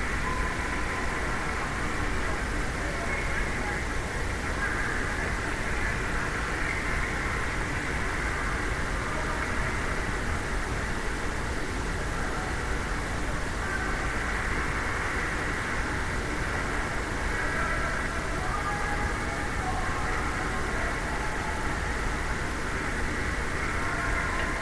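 Ice-rink ambience from youth hockey game footage: a steady, dull low hum with faint, indistinct voices from the stands and the ice now and then.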